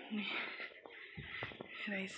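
Brief snatches of a person's voice over faint background noise, with a couple of faint knocks in the quieter middle.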